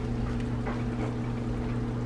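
A silicone spoon stirring linguine and shrimp through a creamy sauce in a cast-iron skillet, with a few soft scrapes, over a steady low hum.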